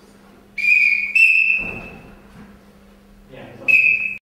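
Whistle blasts calling a scoring decision in a karate bout: two blasts about half a second in, one straight after the other, the second longer and fading, then a third short blast near the end as the judges' red flags go up.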